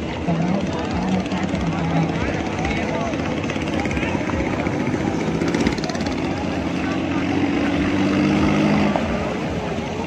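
Long-tail 'võ lãi' boat engine running at speed on the river, its note climbing in the last few seconds as the boat passes close, over background voices.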